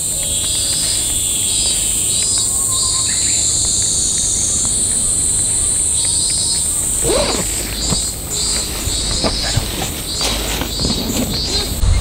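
Insects chirping in woodland: a steady high drone with rhythmic pulsed chirps about twice a second. A brief low rumble runs through the second half.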